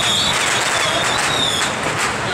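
Steady, loud hubbub of a large crowd walking along a street with traffic. A high, thin, wavering tone runs through most of it and stops shortly before the end.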